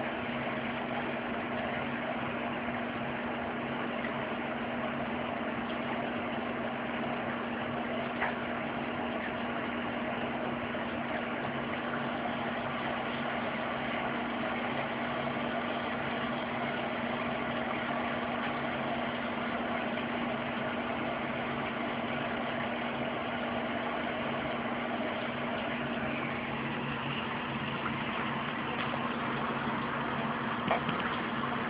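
A steady, unbroken machine hum with a low droning tone, with one faint click about eight seconds in.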